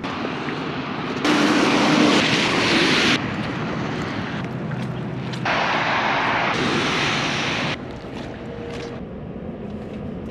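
Steady rushing hiss of wind and rain on a wet street, jumping abruptly up and down in level several times as the footage cuts between short takes.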